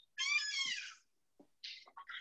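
A short high-pitched animal-like cry, under a second long and arching in pitch, followed by a few faint ticks.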